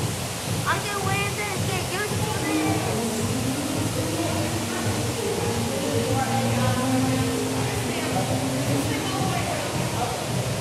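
Steady rushing of pool water, with people's voices echoing in the background.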